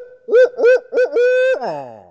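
A man imitating a barred owl's call with his voice, loud: a quick run of short hoots in the 'who cooks for you, who cooks for you all' rhythm, ending in a long drawn-out hoot that slides down in pitch and fades.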